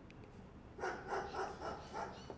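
A dog barking, a quick run of four or five short barks starting about a second in.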